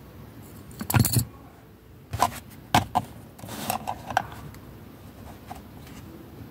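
A car key being handled: a loud knock about a second in, then a string of short metallic clinks and rattles as the key and its ring are moved about.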